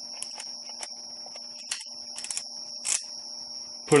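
Small clicks and scrapes of a Nikkor 50mm f/2 lens being offered up and turned against a Nikon EM camera's lens mount: a few scattered ones, a cluster a little past two seconds in and a slightly louder one near three seconds. A steady electrical hum with a high whine sits underneath.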